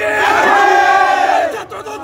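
Rally crowd chanting a slogan in unison, one long shouted phrase that falls away about a second and a half in.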